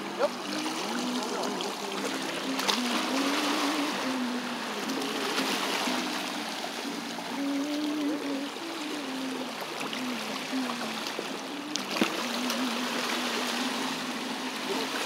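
Small waves washing and trickling against a rocky sea wall, with music playing: a melody of held notes that step up and down. Two sharp clicks stand out, one just at the start and one near the end.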